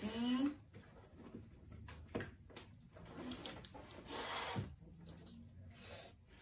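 A plastic-wrapped shipping package being handled and opened with a pen tip: scattered small crinkles and clicks, then a louder half-second tearing rasp about four seconds in. A short rising vocal sound comes at the start.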